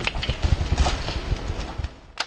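Black bear running off through dry leaves and brush, a quick, uneven run of crackles and thuds.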